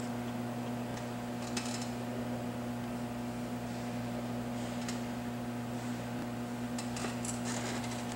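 Steady low electrical hum from the running vibration-test equipment, unchanged while the sine sweep climbs, with a few faint clicks.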